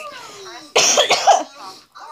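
A woman who is sick coughing: one short fit of coughs about a second in.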